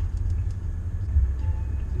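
Bentley Bentayga driving at speed, heard from inside the cabin: a steady low rumble of its twin-turbocharged W12 engine and road noise.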